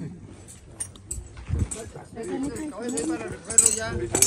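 Indistinct voices of people talking in the background, getting a little louder in the second half, with a few light clicks and knocks.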